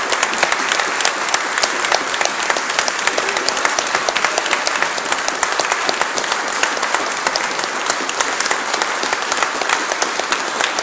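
Audience applauding steadily: a dense, continuous patter of many people's hand claps.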